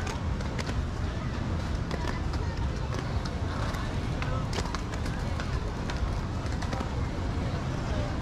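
Skatepark ambience: a steady rumble under background voices, with scattered sharp clacks and knocks of skateboards on the ramps and deck.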